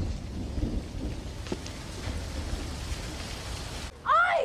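A steady, deep rumble under an even hiss, with a faint tick about one and a half seconds in: the soundtrack's ambience of a wreck.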